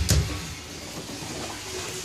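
A sharp knock at the start as the PVC ball valve is handled, then a steady hiss of water running through the valve and hose into a plastic tank.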